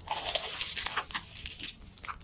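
Close-miked bite into a crumb-coated, deep-fried cheese ball: a dense crackling crunch of the crisp crust, strongest in the first second and tapering off into smaller crunches.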